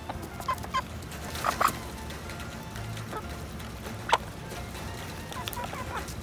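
Hens clucking softly while pecking at pieces of peach, with short sharp taps among the calls, the loudest about four seconds in.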